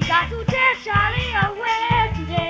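A boy singing a calypso into a microphone, his voice gliding through the melody over a live backing band with low bass notes and a steady beat.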